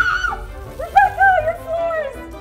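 A woman's high, drawn-out "noooo" trailing off just after the start, then a woman's drawn-out, wavering exclamation about a second in, over light background music.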